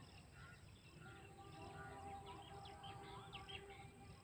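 Faint chirping of small birds, many short calls that come thicker in the second half, over a faint steady low tone.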